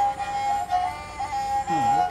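Bowed serja, a carved wooden Bodo folk fiddle, holding a long, slightly wavering high note. Near the end a low male voice slides in underneath.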